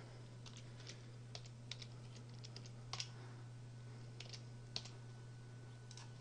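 Faint computer keyboard typing: a short run of irregular single key clicks, as an IP address is keyed into a box.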